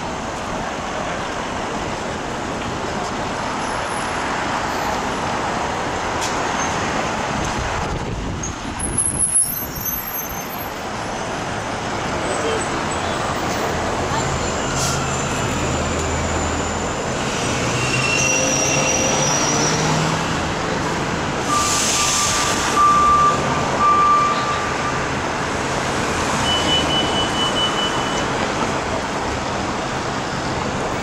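Steady city street traffic, with cars and a taxi passing and a New Flyer D60HF articulated diesel bus idling at the stop. About two-thirds of the way in there is a short hiss of air, followed by a brief beeping.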